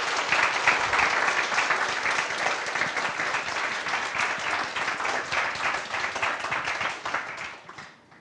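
Audience applauding, the clapping dying away near the end.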